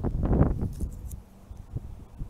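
Low rumbling noise on the microphone from wind or handling, loudest in the first half-second, then easing off.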